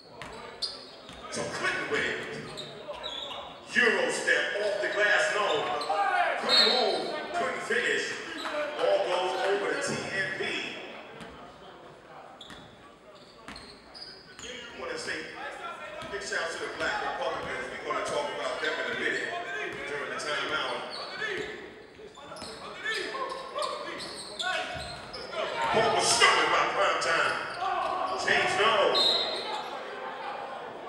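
A basketball being dribbled and bounced on a hardwood gym floor during play, mixed with indistinct voices echoing in the large hall.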